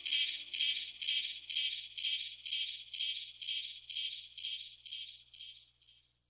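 Outro of a house track fading out: a high, hissy percussion hit, like a hi-hat, repeats about twice a second and grows steadily quieter until it stops near the end. Low synth tones under it die away within the first two seconds.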